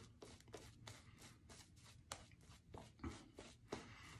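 Faint, irregular soft strokes and small crackles of a shaving brush working thick shaving-soap lather over the face.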